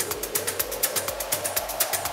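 Techno track playing through a Pioneer DJ mixer with its bass EQ cut, so the kick drum drops out and the hi-hats keep ticking. The mixer's noise effect is mixed in as a band of hiss that slowly rises in pitch, building a breakdown.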